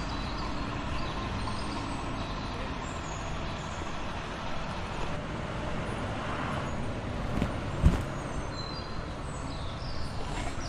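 Steady low rumble of motor-vehicle noise, with a couple of low thumps about three quarters of the way through.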